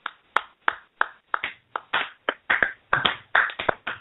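Hands clapping: scattered separate claps that quicken and crowd together near the end, applause from one or two people.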